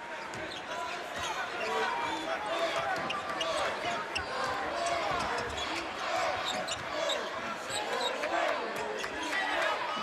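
Game sound from a basketball court: a ball dribbling on the hardwood floor and sneakers squeaking, over a steady murmur of crowd voices in a large arena.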